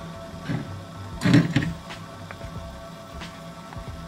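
Quiet background music, with brief rustles of a ration coffee packet being handled and its powder tipped into an aluminium cup, the loudest about a second in.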